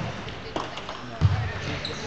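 Table tennis rally: the ball knocks off the paddles and the table a few times, roughly half a second apart, with one louder thud a little past halfway, in a large echoing gym hall.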